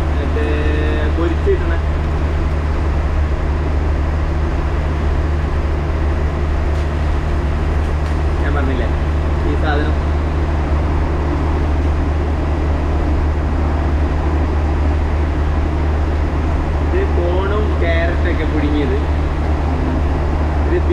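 Steady low engine drone heard from inside a moving vehicle, with faint voices talking now and then.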